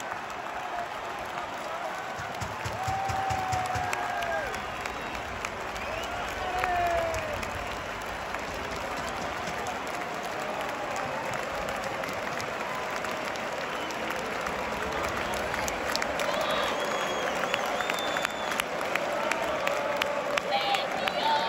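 Large football stadium crowd cheering and applauding a home goal, a steady roar with individual shouts rising above it a few seconds in and scattered claps later.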